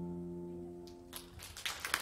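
The final chord of a keyboard and guitar rings and fades away. About a second in, scattered clapping starts and builds into applause.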